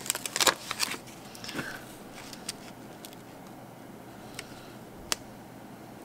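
Paper planner stickers being peeled from their backing sheet and placed on the page: a quick cluster of crackly clicks in the first second, then a few soft, scattered ticks.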